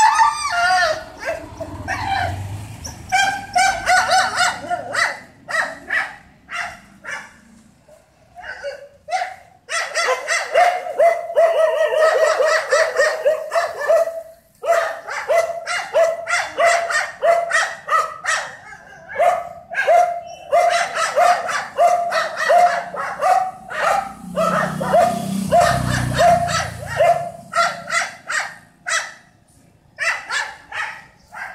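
Dog barking rapidly and insistently, several short barks a second, each dropping in pitch. The barks come in long volleys with brief pauses about 8 and 14 seconds in. A low rumble sounds under the barking about 25 seconds in.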